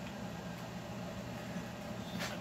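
Steady low background hum of the workshop, with a couple of faint ticks from the chainsaw cylinder being handled as it is lifted off the crankcase.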